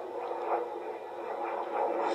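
Muffled background noise of an old film soundtrack played back through a screen recording, with a soft knock about half a second in.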